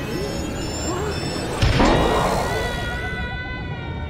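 Dramatic orchestral film score with a sudden crash about a second and a half in. Soon after comes a wobbling, springy 'boing' sound effect and a scream.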